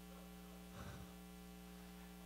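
Near silence with a steady electrical mains hum from the sound system, and one faint, brief sound a little under a second in.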